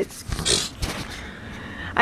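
Handling noise from a compact camera being picked up and turned around by hand: rubbing and a few low bumps from fingers on the camera body, with a short hiss about half a second in.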